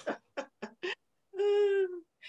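A woman's brief laugh, a few short breathy bursts, followed by a held, slightly falling 'umm' in the second half.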